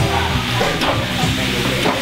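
Plate-loaded Prowler sled being pushed, its metal skids scraping steadily across the gym turf in a continuous hiss.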